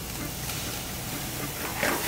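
Wine sizzling as it is poured into a hot pan of browned sausage meat, deglazing it; the hiss grows louder near the end.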